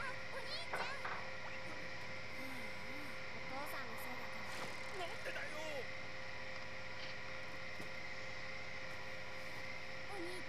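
Faint Japanese dialogue from the anime episode playing, over a steady electrical hum and hiss.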